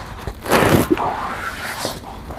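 Fabric sling bag and its strap rustling and scraping against a shirt as the bag is lifted off over the head, louder from about half a second in.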